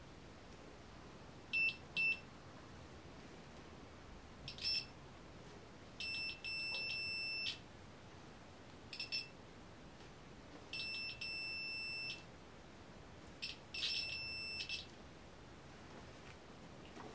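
Digital multimeter's continuity beeper giving a high-pitched electronic tone in irregular beeps, some short blips and some held for about a second, as a hand presses on a knitted conductive fabric swatch clipped between its probes: the beeps come when the fabric's resistance drops under pressure.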